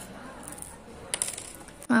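A small metal key ring clinking as it is handled, a few short metallic clicks about a second in, with soft handling noise before them.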